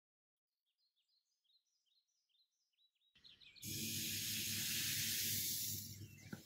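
Faint, high chirps for the first three seconds, then a loud, steady hiss over a low hum: crepe batter sizzling as it is poured into a hot non-stick crepe pan.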